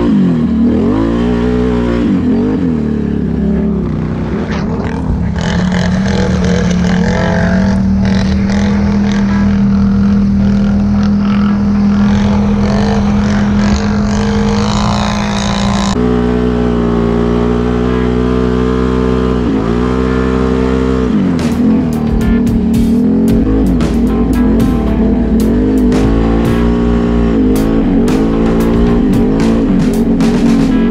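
ATV's V-twin engine being ridden, its pitch rising and falling repeatedly as the throttle is worked, holding steady for several seconds in the middle. Short light ticks join in during the last third.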